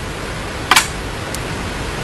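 One sharp click of a Go stone being handled, with a fainter tick about half a second later, over a steady hiss.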